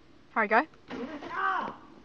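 A man's voice: two short calls falling in pitch about half a second in, then a longer exclamation.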